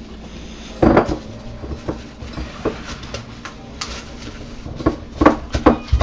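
Plastic wrap being handled and pressed into a mixing bowl on a countertop: a loud knock about a second in, then light crinkling and a quick run of sharp clicks and knocks near the end.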